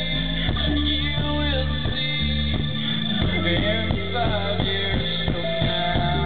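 Live pop-rock band playing: a steady drum beat over held bass and keyboard notes, with a singer's voice.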